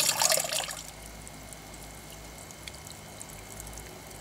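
Pump-fed water pouring from a hose fitting into a plastic filter bucket, loud and close at first. After about a second it drops to a faint, steady trickle with a few small drips.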